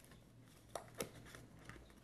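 Near silence with faint handling noise from a plastic-wrapped cardboard perfume box being turned in the hands: two light clicks close together in the middle.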